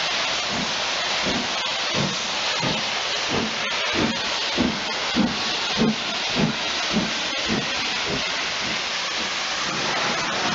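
LMS Stanier Class 5 'Black Five' 4-6-0 steam locomotive No. 45231 passing and working steam, its exhaust beating evenly at a bit under two chuffs a second over a steady hiss. The chuffs grow louder midway as the engine draws level and fade near the end.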